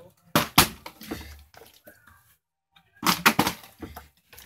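Plastic water bottle tossed in a bottle flip and hitting down: two sharp thuds about half a second in, then a cluster of quick knocks about three seconds in.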